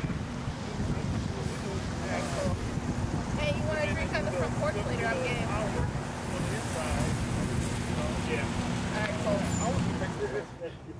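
Indistinct conversation outdoors, the voices muffled under heavy wind noise on the microphone, with a faint steady low hum underneath.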